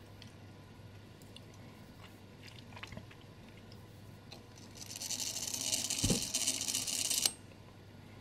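Gilbert kitchen clock movement's strike train let off at the half hour: faint clicks as the minute hand is turned, then the train runs with a whirr for about two and a half seconds, a single low thump partway through, and stops abruptly. The repairer takes it as a sign that a wheel in the train is out of position.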